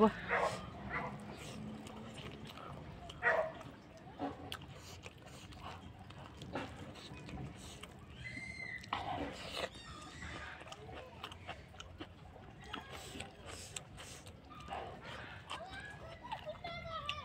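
A person chewing a mouthful of rice and pork, with soft scattered mouth clicks and smacks.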